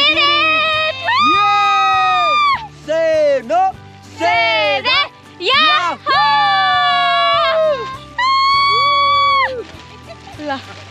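Singing: a voice holding long notes that slide down at their ends, several phrases with short breaks between, over a steady low musical accompaniment.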